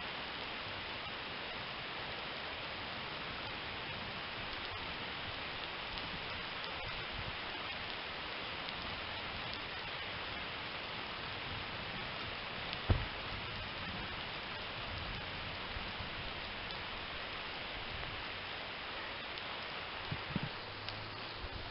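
Steady hiss of rain falling. About two-thirds of the way through there is one heavy thud, the roughly 40–50 kg stone being dropped from the shoulder onto the ground.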